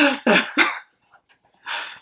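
Young women laughing: a few short bursts of laughter at the start, a brief pause, then a breathy, unvoiced laugh burst near the end.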